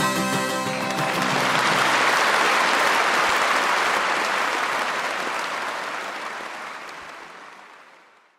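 The last harmonica and acoustic-guitar notes of a live song end about a second in, giving way to audience applause, which swells and then fades out near the end.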